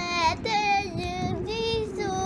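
A child singing in a high voice, a few drawn-out notes that step up and down in pitch.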